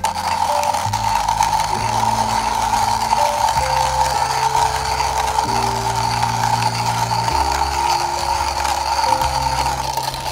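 Wooden hand coffee grinder being cranked: a steady, continuous grinding rasp from the burrs as the steel handle turns. Background music plays underneath.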